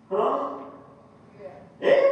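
A man's voice preaching in loud bursts with a sharp breath: a short exclamation just after the start that trails off, a pause, then loud speech again near the end.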